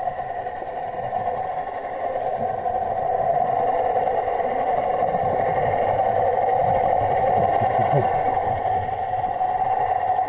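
Muffled underwater sound picked up by an action camera in its waterproof housing: a steady droning hum with a low, shifting rumble of water movement.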